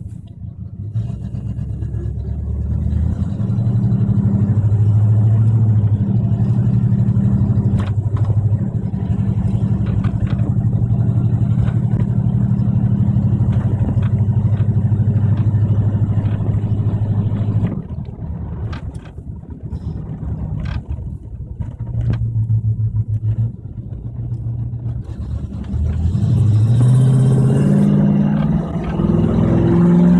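1976 Chevrolet Impala's engine heard from inside the cabin while driving: it picks up to a steady pull in the first few seconds, eases off a little past halfway, then climbs in pitch again near the end as the car accelerates.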